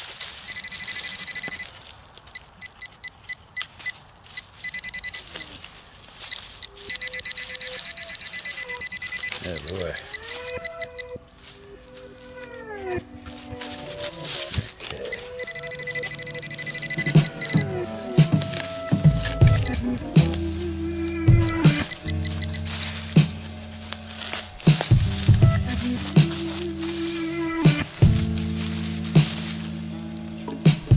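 Electronic metal-detecting tones: rapid high-pitched beeping in the first half, then lower pitched tones that hold and change pitch, mixed with sharp scrapes and clicks of a knife digging in soil.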